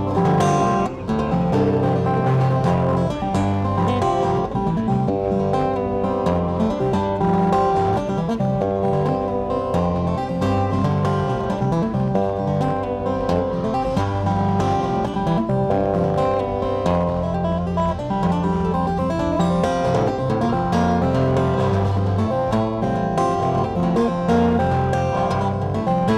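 Solo steel-string acoustic guitar played fingerstyle. Low bass notes move under a higher picked melody, with no break.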